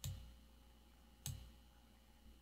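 Two computer mouse clicks about a second and a quarter apart, each short and sharp with a faint low thud, over near silence.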